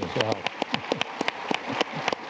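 A man clapping his hands close to his lapel microphone, sharp claps several a second, over the wider patter of audience applause.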